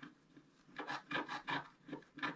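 Wooden stylus scratching the black coating off scratch-art paper in a quick run of short strokes, about four or five a second, starting near the end of the first second.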